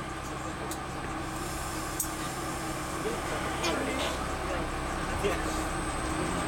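Steady low hum inside a stopped MBTA Red Line subway car, with faint background voices and a couple of soft clicks.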